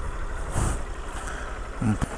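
Motorcycle engine running at low revs, a low steady hum, as the bike rolls slowly to a stop.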